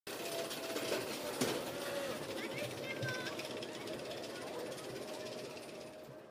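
Mack Rides spinning coaster car running on its steel track: a dense, steady rattle with a thin steady whine beneath it, and one sharp knock about one and a half seconds in.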